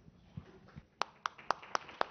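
Sparse hand claps from a few people, about four a second, beginning about a second in: the first claps of applause starting up.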